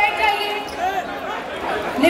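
Crowd shouting and talking over one another in a large hall: the uproar of a scuffle breaking out.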